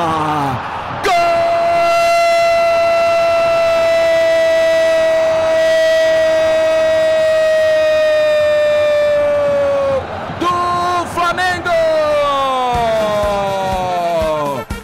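A Brazilian radio football narrator's goal cry: one long held 'gooool' on a single steady note for about nine seconds, dipping in pitch as it ends, then a few shorter shouted phrases. It announces a goal, here an own goal.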